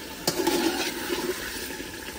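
Chicken masala frying and bubbling in an aluminium pot as a steel ladle stirs it, a steady watery sizzle. A sharp clink of the ladle against the pot comes about a quarter second in.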